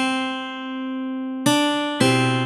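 Guitar playing a slow single-note melody from the tab. One note rings out and fades, then the next is plucked about one and a half seconds in.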